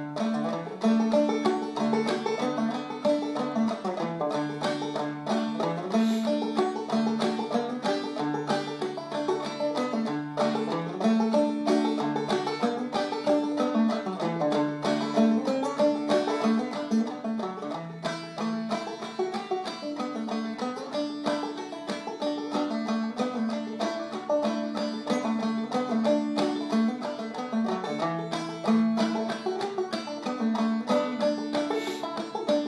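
Old-time tune in the key of D played on banjo at a steady, lively tempo, a dense run of plucked notes with a repeating melody.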